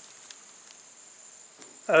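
Insects trilling in a steady, high-pitched drone, with a few faint ticks.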